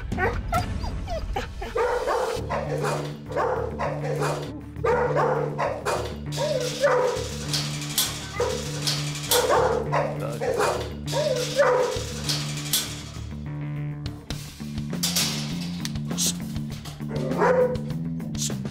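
Pit bull barking repeatedly and excitedly in a kennel as another dog is brought near, with a lull before one last bark near the end, over steady background music with a beat.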